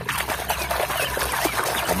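Splashing and sloshing of shallow muddy water as a hand swishes a toy vehicle through it to wash off the mud. The splashing starts abruptly and keeps on.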